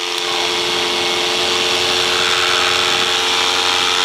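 Paramotor engine and propeller running steadily in flight, a constant drone that holds its pitch.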